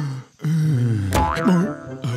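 Cartoon sound effects: a wordless falling vocal sound, then a springy boing with a quick up-and-down wobble about a second in. Music holds a steady note underneath.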